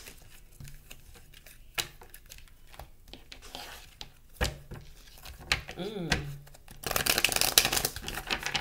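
A deck of tarot cards being handled and shuffled on a wooden table: scattered taps and slides of cards, then a dense burst of rapid card flutter about seven seconds in.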